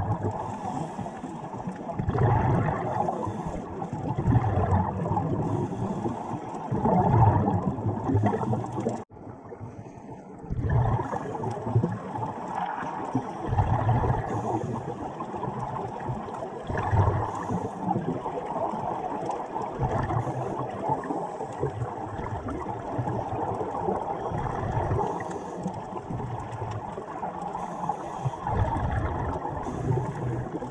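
Scuba divers' exhaled regulator bubbles rumbling and gurgling underwater in recurring swells every few seconds, breath by breath. The sound briefly drops out about nine seconds in.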